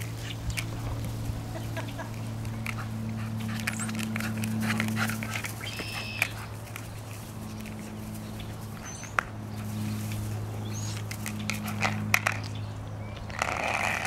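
Yellow Labrador puppy playing with a rubber dog bowl: scattered clicks and knocks of the bowl, a short high whine about six seconds in and a brief scuffle near the end, over a steady low hum.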